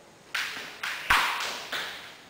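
Four sharp, unevenly spaced slaps of a jump rope on the gym mat, each ringing briefly in the room; the third, a little past the middle, is the loudest and comes with a low thud.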